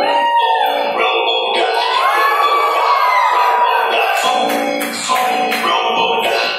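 Dance music for a group routine. The bass drops out at the start, leaving gliding pitched tones, and sharp beats and the low end come back in from about four seconds in.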